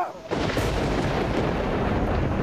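Dramatic sound effect from a TV mythological serial's soundtrack: a dense, steady rush of noise with a deep low end that cuts in suddenly about a third of a second in.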